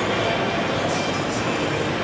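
Steady din of a busy exhibition hall: an even wash of crowd chatter and hall noise with no single sound standing out.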